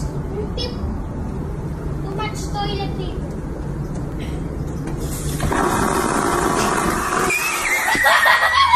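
Toilet clogged with toilet paper being flushed: a rushing, churning water sound starting about five seconds in, after faint voices over a steady hum.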